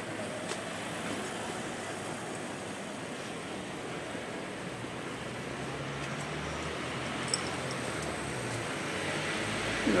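Busy street ambience: a steady hum of road traffic and running engines, with faint voices, growing slightly louder toward the end.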